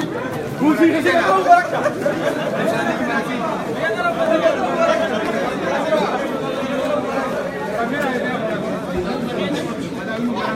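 Crowd chatter: many people talking at once, no single voice standing out, a little louder about a second in.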